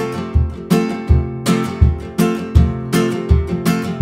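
Nylon-string classical guitar with a capo, strummed in a steady rhythm of about three strokes a second, low bass notes alternating with full chords: the instrumental intro of a song.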